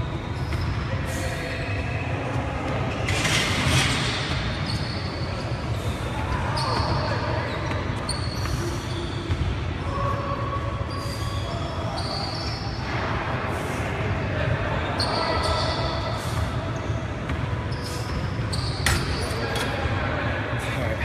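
Gym room ambience: a steady low hum under indistinct background voices, with a few sharp thumps, one near the end.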